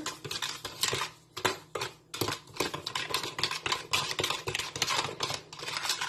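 A metal spoon stirring and scraping inside a plastic tub, mixing sugar and vinegar into mayonnaise for a dressing: a quick, uneven run of clicks and scrapes, several a second.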